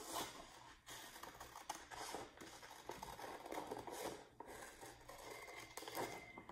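Scissors cutting a sheet of paper: a faint, irregular run of snips with the paper rustling as a circle is cut out.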